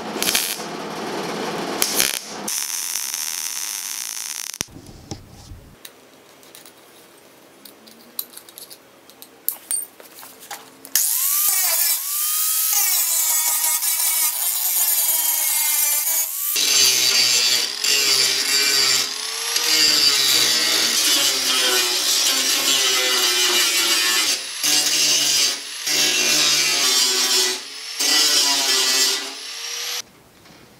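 MIG welder crackling as it welds steel strips into a sheet-metal fender. From about a third of the way in, an angle grinder grinds the weld seams down, its pitch sagging and recovering as it bites into the steel, with a few brief stops near the end.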